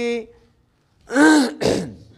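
A man clears his throat: two short, loud rasping bursts in quick succession about a second in, after a brief silence.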